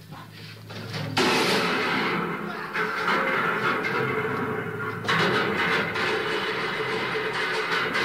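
Noisy experimental soundtrack built of abrupt cuts. A low hum with faint clicks gives way about a second in to a sudden dense wash of noise over a steady drone, which shifts abruptly twice more.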